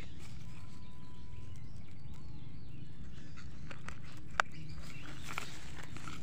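Steady low outdoor background with a faint thin whistle early on, and one sharp click about four and a half seconds in, followed by light rustling.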